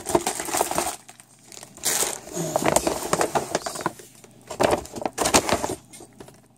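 Plastic food packaging and a large storage bag crinkling and rustling as bags of dried food are pressed flat and squashed into place, in three bursts.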